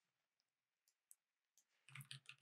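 Near silence broken by a few faint, isolated computer keyboard clicks, then a quick run of keystrokes starting near the end.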